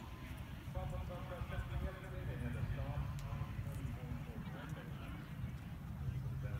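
Indistinct voices talking throughout, over a steady low rumble.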